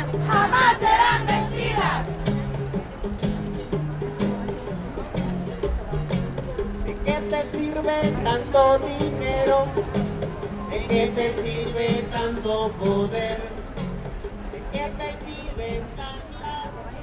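Live band music with singing: a bass line steps through a repeating pattern under a lead voice, with a loud rising and falling sung phrase in the first two seconds.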